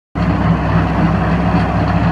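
Tractor engine running at a steady speed.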